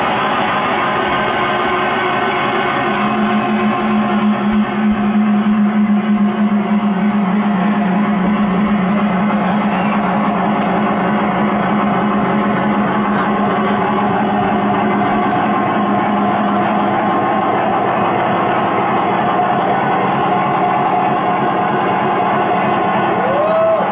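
Loud live electronic noise music: a dense, distorted wash that runs without a break, with a steady low tone that comes in about three seconds in and drops out after about seventeen seconds.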